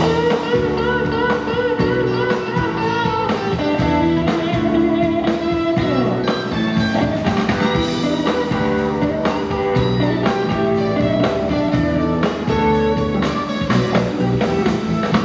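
Live rock band playing an instrumental section: electric guitars over bass and drums, with sustained and bending guitar notes.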